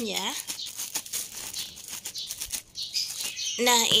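Wooden pestle wrapped in plastic pounding steamed glutinous rice in a plastic-lined basin: repeated dull strikes mixed with the rustling and crinkling of the plastic sheets.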